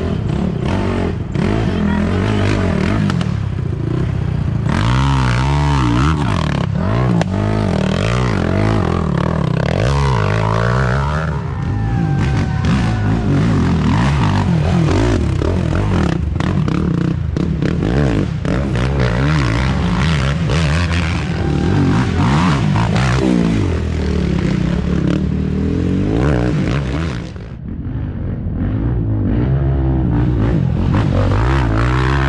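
Racing ATV engines revving hard and passing close by, their pitch rising and falling as the riders accelerate and back off through a muddy woods trail. Scattered knocks and clatter run through it, and there is a brief lull near the end.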